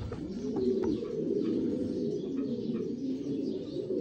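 Domestic pigeons cooing, a steady low murmur.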